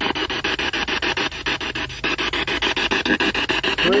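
Spirit box scanning rapidly through radio stations: a hiss of static chopped into even clicks, about ten a second.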